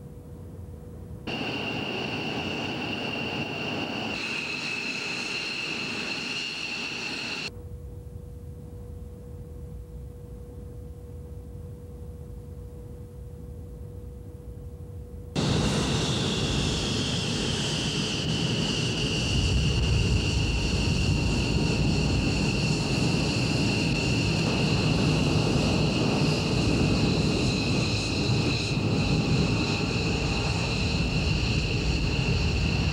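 F-15 Eagle jet engines (Pratt & Whitney F100 turbofans) running on the flight line: a high whine over a low rumble. It is heard for about six seconds starting a second in, gives way to a quieter stretch of steady hum, then returns louder from about halfway through, its pitch easing down a little at first.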